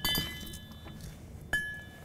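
Steel tow-hitch ball mounts clanking as they are handled: one strike at the start and another about a second and a half in, each leaving a short metallic ring.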